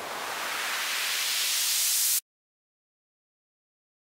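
White-noise filter sweep from the Sytrus synthesizer, rising as the filter cutoff is automated upward and the volume fades in, so the hiss grows louder and brighter. It cuts off suddenly about two seconds in when playback is stopped.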